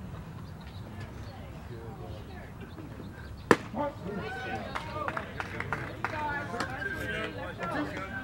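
A baseball bat hitting a pitched ball with a single sharp crack about three and a half seconds in, followed by several voices calling out.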